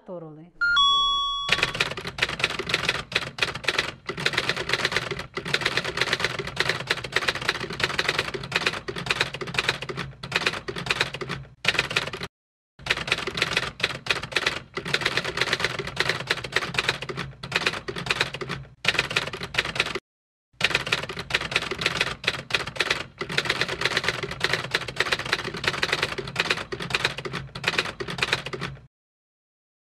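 Typewriter sound effect: a bell ding about a second in, then a long run of rapid keystroke clicks. The clicks break off briefly twice, near the 12- and 20-second marks.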